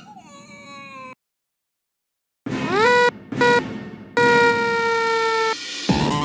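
A cartoon character's high-pitched squealing voice slides downward. After a second of silence it gives a scream that rises and breaks off, a short repeat of it, and then one long held scream, chopped and repeated as in a sparta remix. Electronic dance music starts at the very end.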